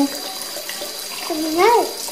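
Water running steadily from a tap into a sink. About one and a half seconds in, a short voice sound rises and falls in pitch over it.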